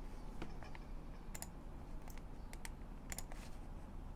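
Faint computer keyboard keystrokes and clicks, a dozen or so irregular taps, over a low steady background hum.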